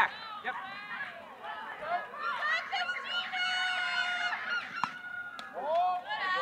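High-pitched young voices shouting and chanting a drawn-out cheer, with several long held notes in the middle.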